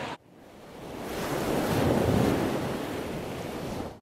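Surf washing on a rocky shore, mixed with wind buffeting the microphone, swelling to its loudest about two seconds in and then easing off before fading out at the end.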